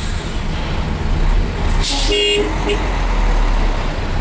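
Low engine rumble of jammed traffic heard from inside a car, with a short hiss and then a brief vehicle horn toot about two seconds in, followed by a second, shorter toot.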